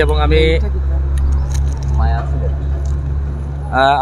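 Steady low engine hum of a road vehicle running, with road noise over it.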